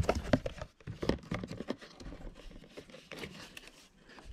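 Cardboard and paper packaging rustling and crinkling by hand, with scattered small knocks and scrapes, as a shipping box is rummaged through and a small paper carton is opened.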